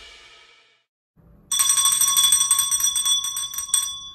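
A small metal bell rung rapidly for about two seconds, starting about a second and a half in; its high tones ring on briefly after the strokes stop.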